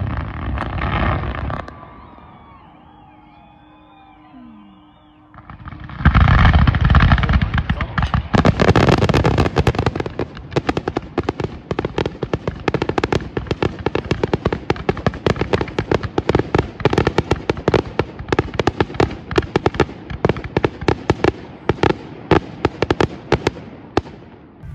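Aerial fireworks display. A few seconds of lull, then a loud burst about six seconds in, followed by a dense, rapid run of bangs and crackles that keeps going.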